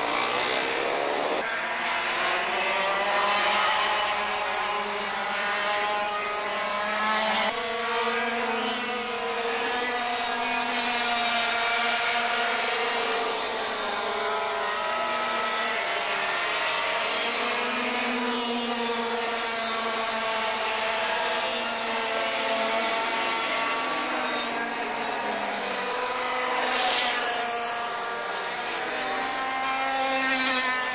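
Formula TKM racing kart two-stroke engines running on track, their pitch rising and falling repeatedly as they accelerate and lift off.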